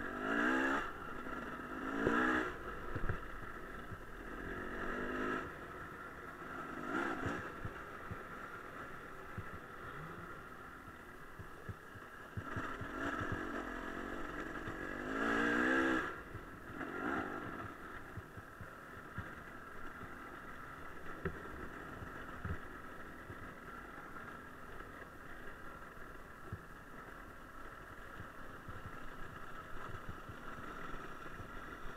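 Enduro dirt-bike engines revving up and falling back in repeated bursts over a steady running drone, the strongest rev about halfway through. Short knocks and rattles come throughout from the bikes riding a rough gravel track.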